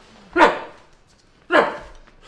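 Two loud barks about a second apart, each short and falling in pitch.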